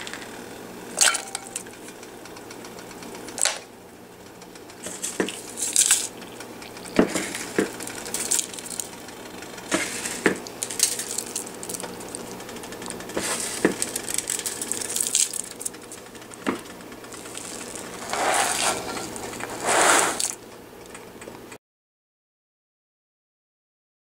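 Scattered clinks and knocks against a metal cooking pot, with rustling handling noise between them over a faint steady hum. The sound cuts off abruptly near the end.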